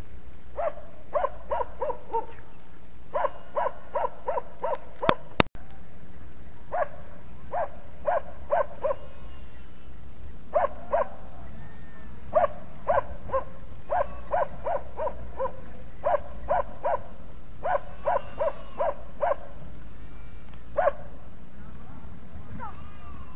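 A dog barking in runs of five to seven short, even barks, about three a second, with pauses between the runs. Two sharp clicks about five seconds in.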